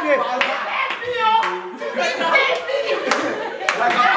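A few sharp hand claps among a group's excited, overlapping voices and laughter.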